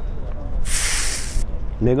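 A short hissing whoosh, just under a second long, from the sound effect of an on-screen subscribe-button animation, over the steady background noise of an open-air car market. A man's voice starts near the end.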